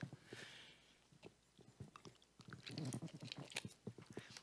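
Near silence: room tone with scattered faint small clicks, a soft hiss just after the start, and a faint murmur of a voice about two and a half to three and a half seconds in.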